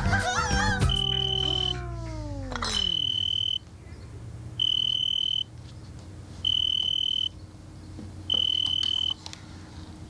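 Dance music winds down, falling in pitch to a stop, then an electronic alarm beeps five times, each a high steady tone just under a second long, repeating about every two seconds.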